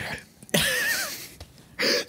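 A man laughing: a breathy, high-pitched laugh about half a second in, lasting around half a second, with quiet breaths around it.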